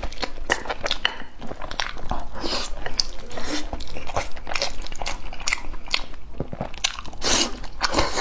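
Close-miked chewing and biting as a person eats pork knuckle and rice, a run of irregular mouth clicks and smacks.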